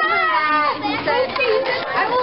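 Children's voices, several at once, chattering and calling out, with one long high call near the start.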